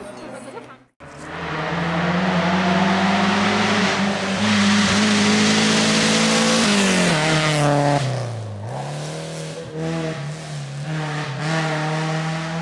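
A car engine running hard at steady high revs under a loud hiss. Its pitch falls away from about seven seconds in, bottoms out at eight and a half seconds, then climbs and holds again.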